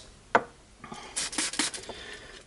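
A hand trigger spray bottle of methylated spirits being pumped, giving a run of quick hissing spurts, with a single sharp click about a third of a second in.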